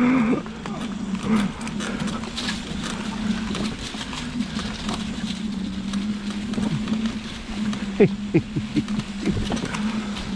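Homemade electric mobility scooter riding over a thick carpet of dry fallen leaves: a steady low motor hum with the leaves crackling and rustling under the tyres.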